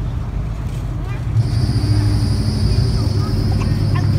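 A motor running: a steady low hum with a thin high whine over it, starting about a second and a half in.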